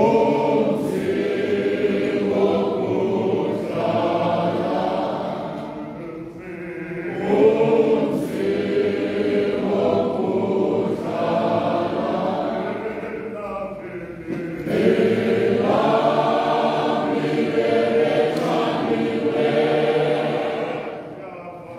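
Many voices singing together in a church, in long phrases with short breaks about six and fourteen seconds in.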